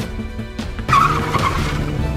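Tyres of a student-built open-wheel race car squealing as it corners, a short loud squeal about a second in, mixed with background music.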